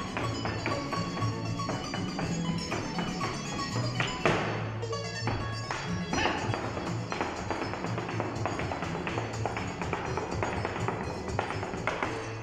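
Mexican folk music playing while boot heels and toes strike a wooden stage in quick zapateado footwork, the sharp taps running along with the music.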